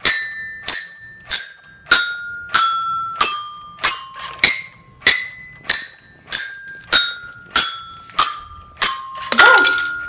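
Wonder Workshop Dash robot striking its toy xylophone accessory with its mallet, ringing out a descending scale of about eight notes at roughly three notes every two seconds, then playing the same downward run a second time. A busier, denser sound follows near the end.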